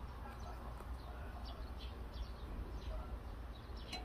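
Outdoor garden ambience: small birds chirping in short, quick falling notes over a faint low rumble.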